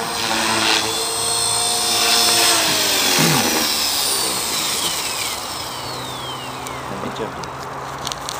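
Electric Align T-Rex 450 Pro RC helicopter's motor and rotor whine, gliding down in pitch a few times as it flies low and comes down onto the grass. The sound grows quieter toward the end.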